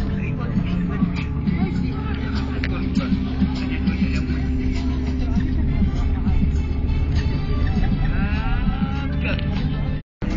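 Steady low drone of a moving vehicle heard from inside, with people's voices and music over it.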